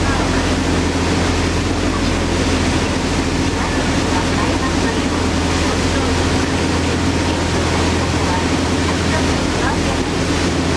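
Steady drone of a fast passenger boat's engines under way, with the rushing hiss of its churning wake and wind.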